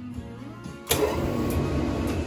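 Over background music, about a second in, a sudden loud hiss starts and holds: a burst of steam from a professional steam iron pressing a garment.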